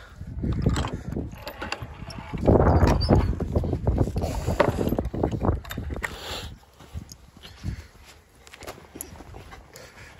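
Someone going through a wooden field gate: irregular knocks and rattles of the gate, with footsteps and handling noise on the microphone. It is loudest a couple of seconds in, then quieter from about halfway.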